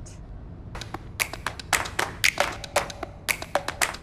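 A quick, irregular series of sharp clicks or taps, about fifteen of them, starting about a second in.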